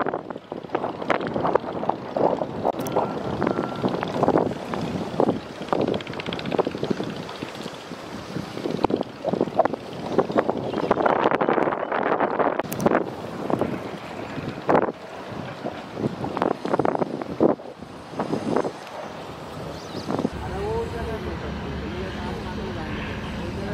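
Wind buffeting the microphone in uneven gusts. Near the end it gives way to a steadier low hum.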